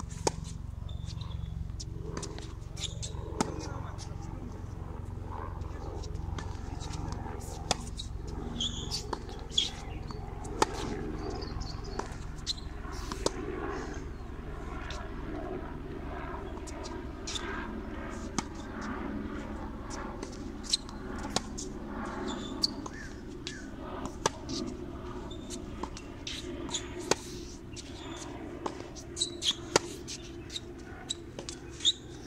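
Tennis rally on a hard court: sharp pops of rackets striking the ball and of the ball bouncing, recurring every second or so.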